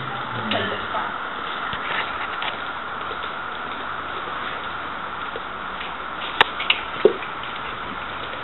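Steady hiss of rain falling, with a few sharp knocks about six to seven seconds in.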